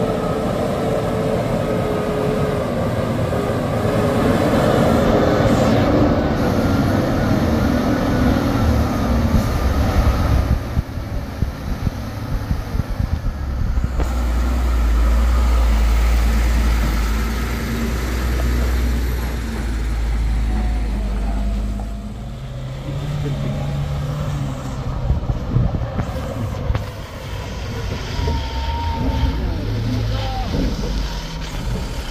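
Diesel engines of heavy Hino trucks labouring up a steep dirt hill, the engine note sinking in pitch under load over the first several seconds. About halfway through, a loaded truck passes close by, a deep steady engine rumble for several seconds.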